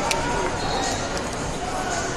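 Many voices chattering across a large, echoing sports hall, with a sharp knock just after the start and another about a second in.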